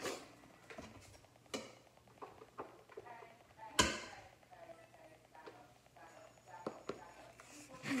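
A spoon knocking and scraping against the stainless-steel inner pot of an Instant Pot and plastic containers as cooked rice is scooped out. There are several short knocks, the loudest, with a brief ring, near the middle.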